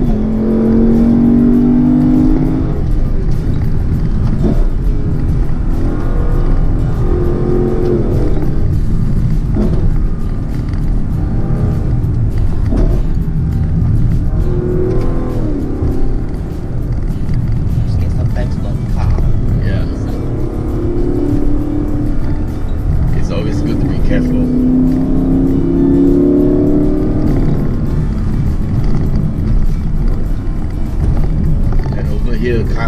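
Lexus LC 500's 5.0-litre naturally aspirated V8 pulling hard uphill, heard from inside the cabin: its note climbs several times and drops back at each gear change, over a steady low engine and road rumble.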